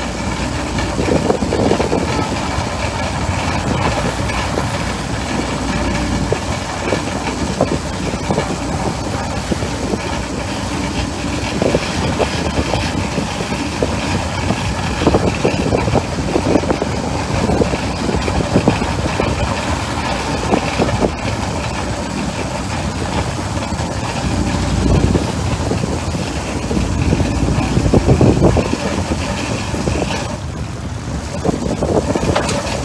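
A lobster boat's engine running steadily while a trawl of traps is hauled, with uneven gusts of wind noise on the microphone.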